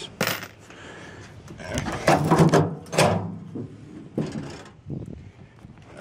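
Handling noise from small hardware: a few separate knocks and clatters of toggle switches and loose nuts being picked through on a plastic case lid, the busiest stretch about two seconds in.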